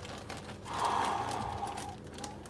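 A person's long breathy exhale of amazement, starting just over half a second in and fading out near the end, over faint rustling of plastic coin bags.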